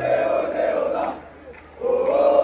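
Large crowd of men chanting in unison. One chanted phrase ends about a second in, a brief lull follows, and the next phrase starts near the end.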